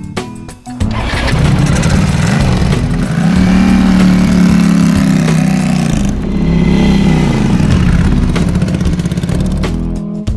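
Ducati 600 air-cooled V-twin motorcycle starting about a second in, then revving and pulling away, its engine note rising and falling. Guitar music plays underneath.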